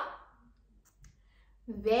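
A pause in a woman's speech: her voice trails off at the start, a couple of faint clicks sound in the quiet, and she speaks again near the end.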